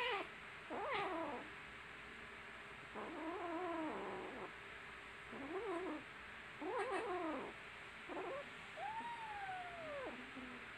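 Kittens meowing over and over, about seven calls spaced roughly a second apart, some short and some longer, the last a long call that falls in pitch.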